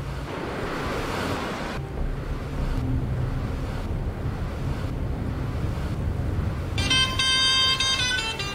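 Steady low road and engine rumble inside a moving car's cabin, with a swell of rushing noise in the first two seconds. About seven seconds in, a smartphone ringtone starts: a bright electronic chord of several steady high tones, signalling an incoming call.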